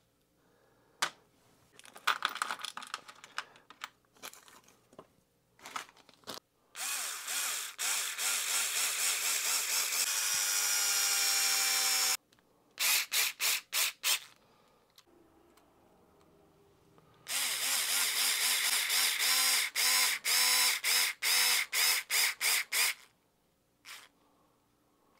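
Small handheld electric screwdriver driving tiny screws into RC transmission gear parts. It makes a run of about five seconds, a quick cluster of short bursts, then another long run that breaks into rapid stop-start pulses as the screws seat. Light clicks of small parts being handled come before it.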